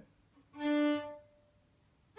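A single bowed fiddle note, about the pitch of the open D string, held for about half a second and then stopped cleanly, with only a brief ring after it. This is the full bow stop of the stop-and-change exercise, which keeps the note from carrying over into the next one.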